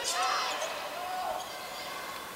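Several short athletic-shoe squeaks on a hardwood court as volleyball players move during a rally, over the murmur of a gym crowd.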